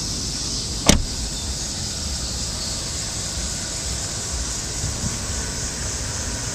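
BMW 528xi's 3.0-litre straight-six idling steadily, with a single sharp knock about a second in.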